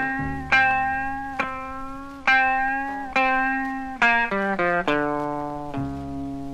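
Instrumental blues introduction played from a 78 rpm record: a series of chords, each struck and left to ring and fade, about one a second, with a guitar-like plucked tone.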